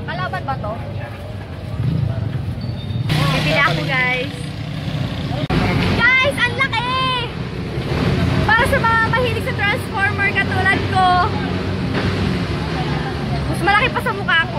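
People talking nearby in short spells, over a steady low rumble of vehicle engines.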